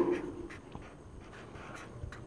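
Felt-tip marker writing on paper: faint short strokes as letters are drawn.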